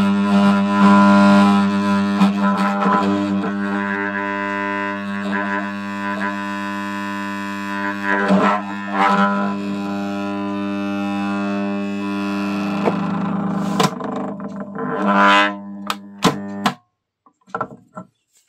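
Armature growler (mains-powered rotor tester) giving a loud, steady deep buzzing hum with an alternator's claw-pole rotor held on its poles, a few clicks near the end as the rotor is handled, then it cuts off abruptly about a second before the end. The growler induces only about 5 V in the rotor winding and heats the rotor, and the tester judges it unsuited to this type of rotor.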